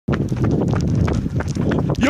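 Quick running footsteps of sneakers slapping on pavement, a rapid rhythmic patter of footfalls over a low rumble of wind and handling on the moving microphone.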